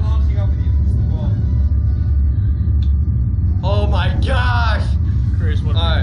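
Steady low rumble from the slingshot ride's machinery as the riders sit strapped in before launch, with a man's voice speaking briefly about four seconds in.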